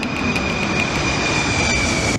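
A loud, steady hissing rush with a high whistle held on one pitch through it, as of a cartoon sound effect.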